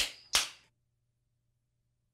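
Two sharp snaps about a third of a second apart, the second slightly louder, followed by dead silence.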